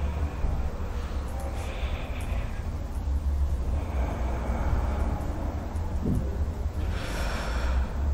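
A person breathing audibly in a few slow, heavy breaths, the longest near the end, over a steady low background rumble.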